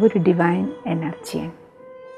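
A woman speaking over soft background music that holds one steady drone note; her speech stops about one and a half seconds in, leaving the held note.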